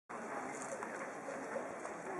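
Open-air background: a steady hiss with faint bird calls, among them dove-like coos.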